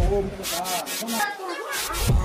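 Hands rubbing and pressing on corrugated cardboard, making a few short scratchy strokes.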